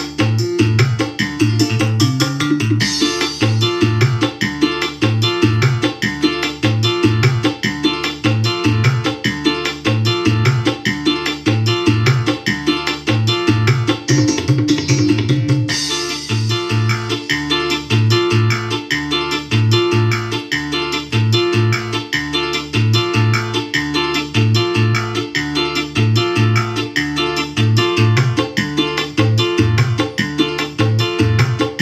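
Music played loudly through a GMC 897W 10-inch portable speaker, with a repeating bass line on a steady beat. The high end turns brighter about three seconds in and again about halfway through.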